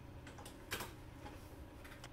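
A few faint, sharp clicks from computer controls being pressed to start video playback, the loudest about three quarters of a second in, over quiet room tone.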